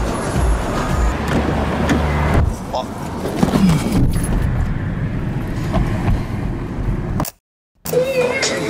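Car cabin noise with music playing and indistinct voices over it. The sound drops out abruptly for about half a second near the end.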